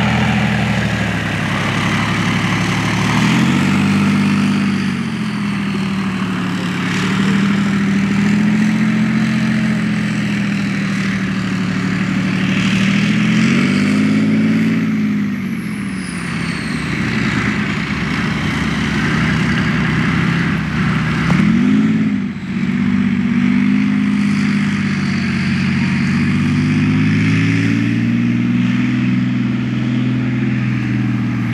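Leopard 2A6A3 main battle tank driving, its MTU V12 diesel engine running under load. The engine note rises and falls several times as the tank accelerates and eases off, with two quick swoops up and back down in the later half.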